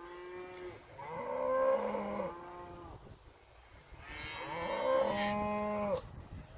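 Young cattle mooing: three drawn-out moos, each falling in pitch, a short one at the start, then longer ones about a second in and again from about four seconds in.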